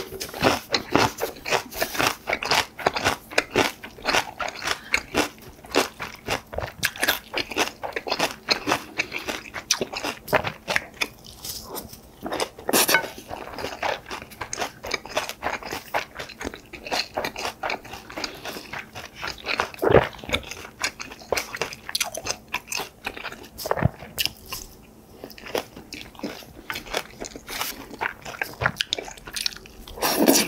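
Close-miked chewing and crunching of mouthfuls of bibimbap and kimchi. The wet, crunchy chewing runs on densely, thins out in stretches in the second half, and has one sharper knock about twenty seconds in.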